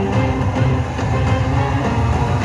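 Film soundtrack music playing loud through a cinema's sound system, with heavy, steady bass.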